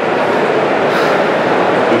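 Loud, steady background din of a large exhibition hall: an even noise with no breaks, rough and poorly recorded.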